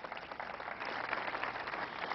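Audience applauding, the clapping building up into a steady patter.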